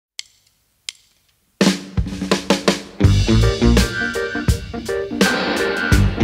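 Two sharp clicks, then a live band's drum kit comes in with single hits about one and a half seconds in. The full band joins about three seconds in with guitars and a heavy low end, playing a reggae song.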